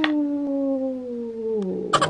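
A woman's voice holding one long sung note that slides slowly down in pitch and trails off near the end.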